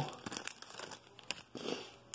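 Thin plastic card sleeves and toploaders crinkling and clicking as baseball cards are handled. There are a few light clicks, then a longer rustle near the end.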